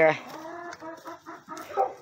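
Hens clucking: a run of short, low clucks, with a louder cluck near the end.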